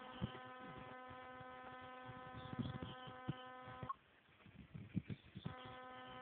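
A steady buzz with an unchanging pitch. It stops abruptly about four seconds in and comes back a second and a half later. Faint low bumps and knocks sound throughout.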